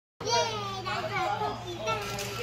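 A young child's high-pitched voice, talking or exclaiming without clear words.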